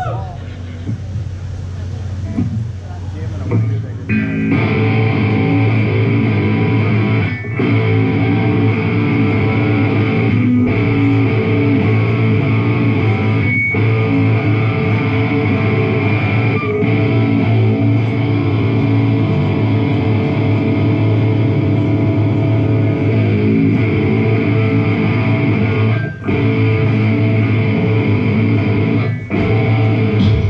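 Live distorted electric guitar and electronics: after a quieter opening, a loud sustained, droning riff comes in about four seconds in and keeps going, broken by short stops about every three seconds.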